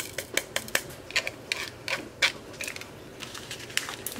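Small diamond-painting drills clicking as they are tipped out of a plastic sorting tray into a small plastic zip bag: an irregular run of light, sharp ticks, thinning out toward the end.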